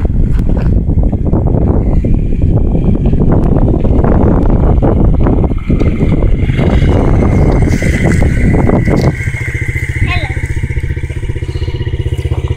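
Yamaha TTR50's small four-stroke single-cylinder engine running as the dirt bike is ridden over gravel, with a loud, rough noise. About nine seconds in the sound changes abruptly to a steady, even idle.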